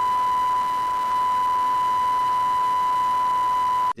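Steady 1 kHz line-up test tone on a Reuters Live broadcast feed's audio circuit, the reference tone used for setting audio levels before the live feed starts. It cuts off suddenly just before the end.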